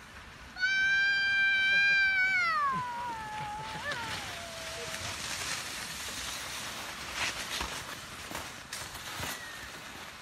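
A person's long, high-pitched drawn-out vocal call, held level for about two seconds and then sliding gradually down in pitch. After it comes a steady scraping hiss of skis sliding over packed snow.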